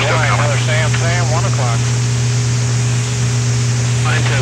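Steady loud hum and hiss of a B-52 crew's onboard flight recording. A brief, unintelligible voice comes over it in the first second and a half.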